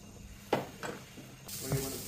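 Two light knocks of a wooden spoon on a nonstick frying pan. About one and a half seconds in, a steady sizzle starts as chopped onions, spring onions and garlic begin frying in oil while being stirred.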